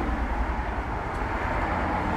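Steady low rumble of outdoor background noise, even and without distinct events.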